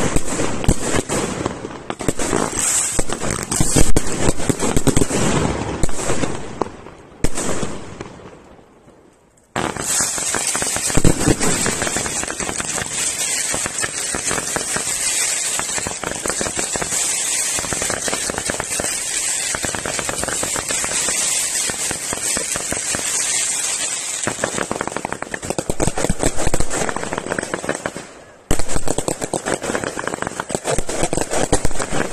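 Fireworks display: aerial shells bursting into dense crackling stars, with heavy bangs in the first few seconds. The sound fades away about seven seconds in, then cuts back in abruptly as a steady, dense crackle. It swells with louder bangs near the end.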